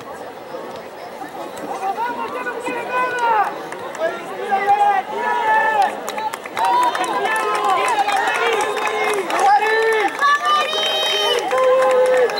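Several people shouting and calling out across an open field, voices overlapping and coming in short calls from about two seconds in, too distant for words to be made out.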